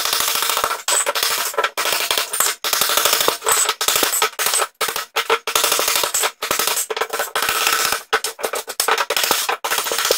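Hammer blows on a steel chisel in rapid succession, chipping ceramic wall tile and mortar off the wall, each blow with a metallic ring; a few brief pauses break the run.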